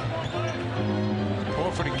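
A basketball being dribbled on a hardwood court under arena music with steady held low notes. A commentator's voice comes in near the end.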